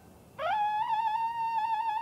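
Solo trumpet: after a short break, a single note slides up into a long held high note with a brief wavering ornament about a second in.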